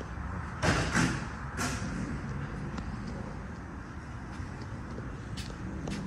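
Three short clunks in the first two seconds, over a steady low background rumble.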